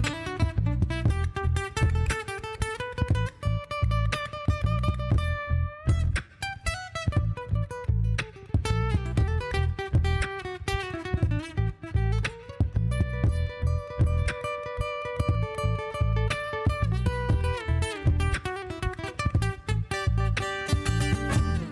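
Acoustic guitar playing a lead solo of sustained single notes with string bends, over a looped backing with a steady repeating low beat.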